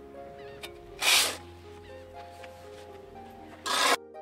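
Background music with sustained notes. Over it come two loud, short scraping rushes, one about a second in and one near the end, from shovels digging into loose sand.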